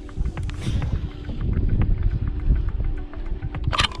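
Baitcasting reel being wound in on a steady retrieve, with scattered light clicks over wind rumble on the microphone and a soft background music note; a short sharp rush of noise near the end.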